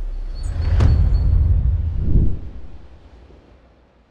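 Trailer-style sound-design boom: a deep rumble with a sharp hit about a second in and a second swell just after two seconds, then fading away.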